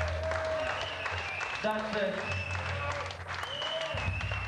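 A live band playing in a hall, with a crowd shouting and clapping over the music.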